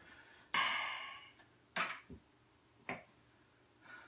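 Handling of a homemade wooden crossbow with a bow prod: a short ringing note about half a second in that dies away over about a second, then three sharp clicks or knocks.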